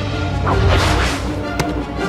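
Whoosh of a broomstick rushing close past, swelling and fading about half a second in, then a single sharp crack, over the film's orchestral score.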